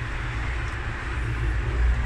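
Steady outdoor street background noise: a low rumble with a hiss over it, like traffic around an open-air ATM, with no distinct clicks or mechanical rhythm.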